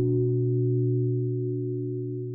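Song intro: one held chord of steady tones, slowly fading.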